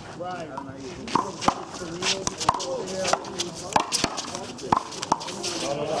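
Sharp smacks of a handball in play: the small rubber ball struck by hand, hitting the wall and bouncing on the hard court, about eight quick irregular strikes over a few seconds, with players' voices underneath.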